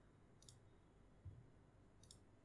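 Near silence: room tone with a single faint computer mouse click about half a second in, then a soft low thump a little after a second.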